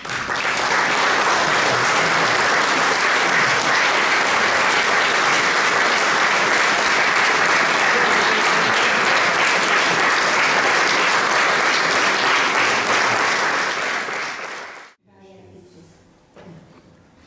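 An audience clapping steadily, dying away near the end.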